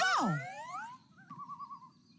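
Cartoon sound effect: a rising whistle-like glide under the shouted word "go!", then a short wavering, warbling tone about a second in.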